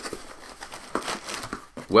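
Cardboard shipping box being opened by hand, its flaps rubbing and the brown kraft packing paper inside crinkling in a dense run of small irregular crackles.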